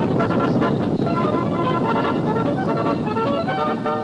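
Music with a dense, steady rumbling noise mixed in under it.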